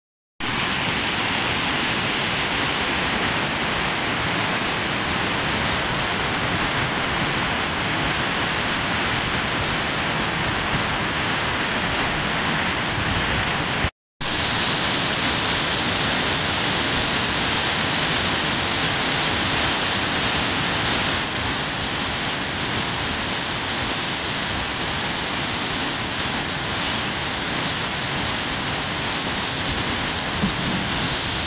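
Steady rush of a fast white-water mountain stream. The sound cuts out for a moment near the middle, then carries on a little quieter in the second half.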